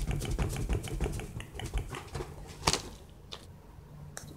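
Rapid, irregular clicking and rattling of objects being handled and set down on a table, with one sharper click a little before the end.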